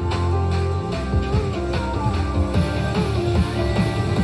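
Guitar music with strong bass and a regular beat, played through a stereo pair of Bang & Olufsen P6 portable Bluetooth speakers.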